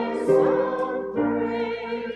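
A small choir singing a hymn with piano accompaniment, moving through two chord changes into a long held closing chord.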